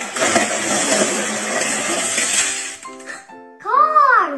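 A bin of small toy cars tipped out in a heap, a dense clatter of toys tumbling over one another for about two and a half seconds. Near the end a child calls out, rising then falling in pitch.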